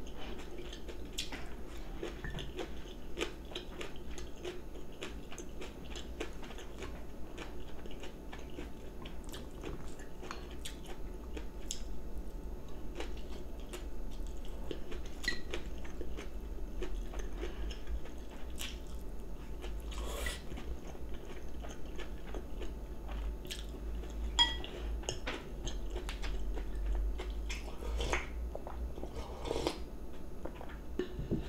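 A person chewing and biting food close to the microphone, with frequent small crunches, and a few sharper clicks of chopsticks against ceramic dishes.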